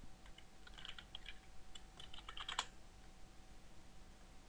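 Faint computer keyboard typing: a quick run of key clicks as a short search term is typed. It stops about two and a half seconds in.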